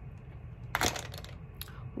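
A small makeup item being handled: a brief crackle about three-quarters of a second in, then a faint click.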